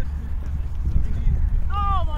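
Wind buffeting the microphone in a steady low rumble, with a short high-pitched shout near the end as a roundnet rally breaks down.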